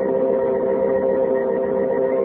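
Organ music holding sustained chords: the radio show's closing theme.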